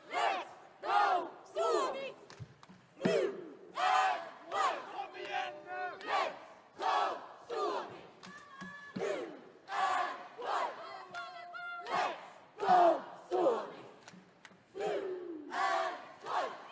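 Cheerleading squad shouting a cheer in unison: a string of loud, sharp shouted words, about one or two a second, with short pauses between them.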